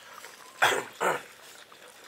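A person slurping hot soup from a bowl: two short, loud sips about half a second apart.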